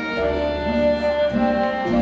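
Instrumental backing track of a pop song played through a stage PA: held, string-like notes over a steady bass line, with no singing.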